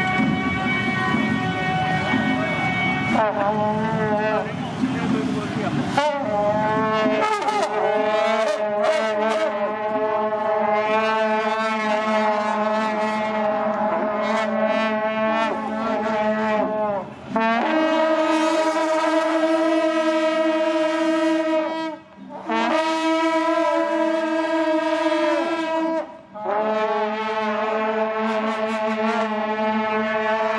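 A troupe of shaojiao, the long brass horns with flared bells used in Taiwanese temple processions, blowing long held blasts together in several pitches at once. The blasts stop briefly three times: at about 17, 22 and 26 seconds. For the first six seconds other music plays instead.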